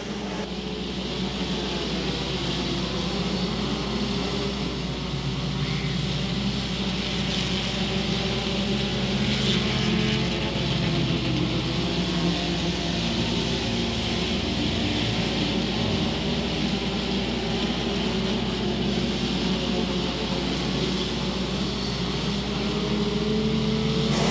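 A field of front-wheel-drive dirt-track race cars running laps together, their engines blending into one steady drone that swells slightly toward the end.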